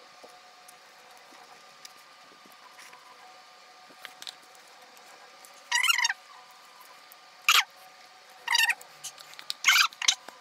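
Short, high-pitched squealing whimpers, four or five of them in the second half after a quiet stretch: a person reacting to the burn of very spicy fire noodles.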